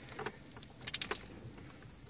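Light clicks and rattles of plastic wiring-harness plugs and cables being handled, with a quick run of clicks around the middle.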